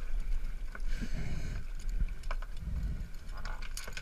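Water sloshing against the side of a small boat, with a few light knocks.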